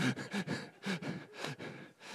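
A man's quiet chuckling and breaths, in short broken voice sounds without clear words.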